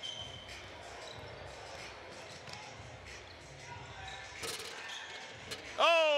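A basketball being dribbled on a hardwood gym floor over the low background of the gym, with a few sharper knocks late on.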